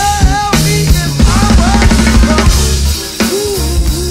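Acoustic drum kit played along with the song's backing track: kick drum, snare and cymbal strokes over a bass line and melodic parts.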